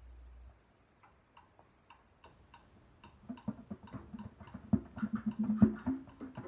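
Afro-Cuban-style percussion starting up: light ticks keep a steady pulse of about two to three a second, then low hand-drum strikes join about three seconds in and grow busier and louder. A low rumble cuts off in the first half second.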